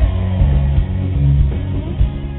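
Loud live pop-rock band playing, with electric guitar prominent and no vocals at this moment.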